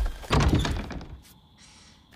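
A sudden thunk followed by a rattling noise that fades away over about a second, from the film's soundtrack.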